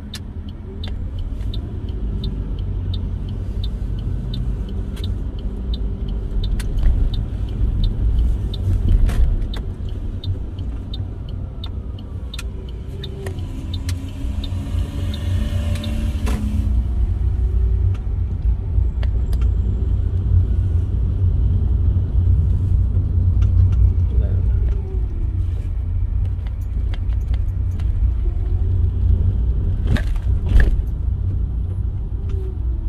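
Car engine and road noise heard from inside the cabin as the car pulls away from a stop light and drives on, a steady low rumble with the engine note rising and falling through the gears. For a few seconds a little before the middle a louder rushing sound joins in.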